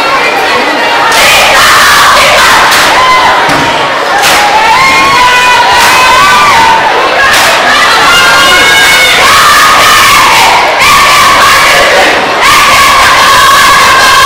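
A group of schoolgirls in a kapa haka group chanting loudly in unison, shouted haka-style calls. About a second in, their singing gives way to the shouted chant.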